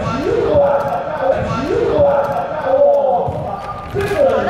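A woman's voice talking, high in pitch, in short rising and falling phrases.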